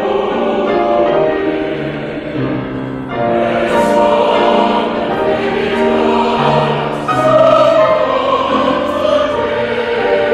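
Mixed-voice church choir singing in parts, holding long chords. The sound swells louder about three seconds in and again about seven seconds in.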